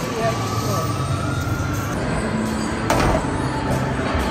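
Bowling alley din: a steady low rumble from the lanes and machinery, with voices and background music over it and one sharp knock about three seconds in.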